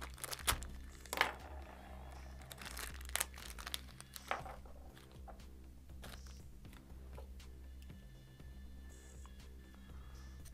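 A small plastic parts bag crinkling as it is handled, with a few sharp clicks from small metal parts and a hex driver on a wooden workbench, mostly in the first half.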